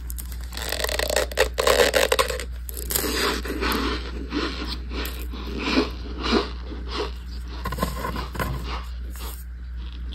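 Baked cornstarch chunks being crushed and crumbled by hand on a hard surface: a dense run of dry, squeaky crunches and scrapes, loudest about one to two seconds in. A steady low hum sits underneath.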